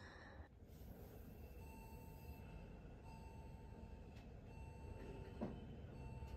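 Near silence: faint room tone with a faint steady hum, and a small tick near the end.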